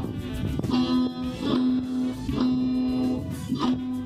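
A small child strumming a tiple, the Colombian twelve-string guitar, in loose strokes. Over the strumming comes a long note, held and broken off about four times.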